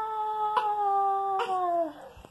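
A dog's long howl, held nearly on one pitch and sliding slowly down, then dropping at the end as it stops, with a couple of faint clicks along the way.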